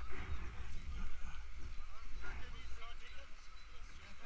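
Raft paddles dipping and splashing in river water, irregularly, over a steady deep rumble of wind buffeting the microphone, with faint voices.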